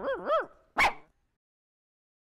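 A dog giving two quick whining yelps that bend up and down in pitch, then a single sharp bark a little under a second in.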